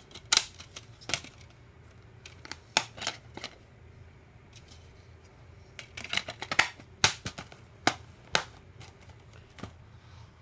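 Sharp plastic clicks and snaps from a black DVD case as a disc is pressed on and pulled off its centre hub, coming in several scattered clusters.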